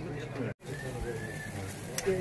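Indistinct background voices of people talking, with a bird calling in thin high notes about a second in. The sound cuts out for an instant about half a second in.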